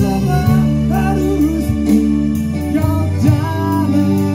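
Live band playing an Indonesian pop song: a male voice singing a melody over a Yamaha PSR-S970 arranger keyboard and electric guitar.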